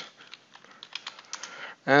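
Typing on a computer keyboard: a quick run of key clicks.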